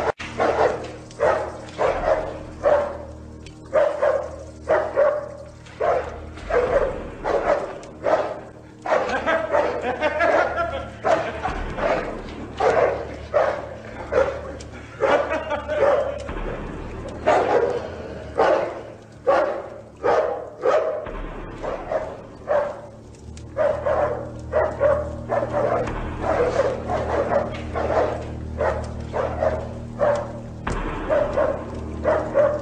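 A large, fierce dog barking over and over, about two barks a second, without a break, over a low steady hum.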